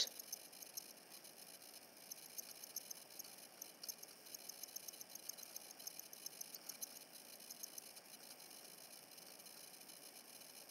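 Very quiet room tone with scattered faint ticks.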